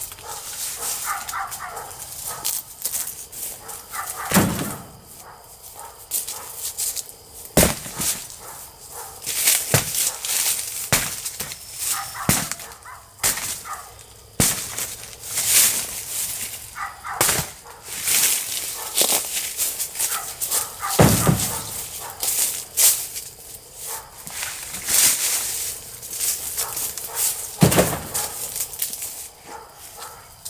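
Hammer blows breaking apart an old wooden crate: sharp knocks with wood cracking and splintering, coming irregularly every two to three seconds.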